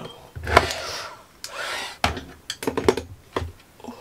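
A paintbrush is swished and knocked against a glass water jar: several sharp clinks and knocks, a quick run of them near the end, with two short swishes early on.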